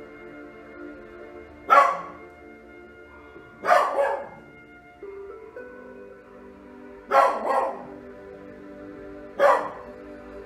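A dog barking in four short bursts, roughly every two to three seconds, some of them doubled, over soft ambient music with long held tones.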